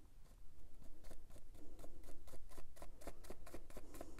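A foam blending brush dabbed quickly and repeatedly onto an ink pad to load it with ink, a fast run of soft taps about five or six a second.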